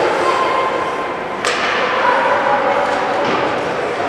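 Indoor ice rink during a youth ice hockey game: a steady wash of crowd voices and skating noise, with one sharp knock about a second and a half in.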